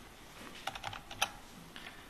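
Computer keyboard keystrokes: a quick, uneven run of key clicks, one louder near the middle.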